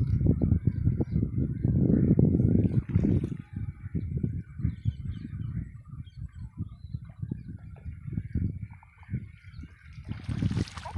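Low rumbling and knocking on the microphone, heaviest in the first three seconds and then coming in short bursts, with birds calling faintly in the background.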